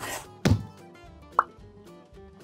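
Title-card sound effects over background music: a swish, then a heavy hit about half a second in, and a short rising pop a second later.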